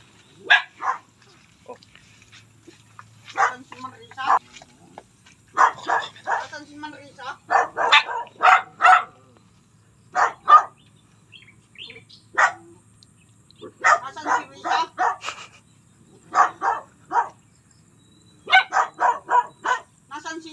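Dogs barking in repeated short bouts, several barks at a time with pauses of a second or two between.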